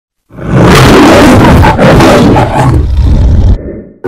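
A lion's roar in the manner of the MGM logo roar, loud for about three seconds, then fading out.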